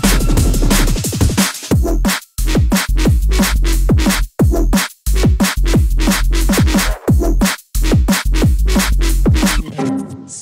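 Jump-up drum and bass track with a heavy bass line and fast breakbeat drums, broken by several brief drops to silence. It stops abruptly just before the end.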